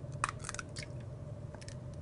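Eggshell being pulled apart by hand to separate an egg: a few faint crackles and clicks of shell, over a steady low hum.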